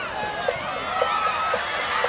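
Football stadium crowd: many voices shouting and cheering from the stands at once, over a short regular knock about twice a second.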